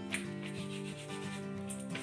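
Wooden rolling pin rolling out paratha dough, a few rubbing strokes over steady background music.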